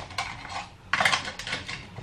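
A metal spoon scraping and clinking against a dish in a series of short strokes, the loudest about a second in, as cream cheese is scooped out and scraped off into a mixing bowl.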